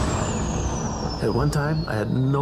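A low, even rumble with a thin high whistle falling slowly in pitch, a dramatic sound effect carried over fire footage. A man's voice starts over it after about a second.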